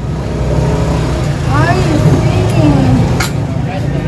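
A motor vehicle's engine running close by: a low rumble that builds over the first second and then holds steady, with faint voices underneath.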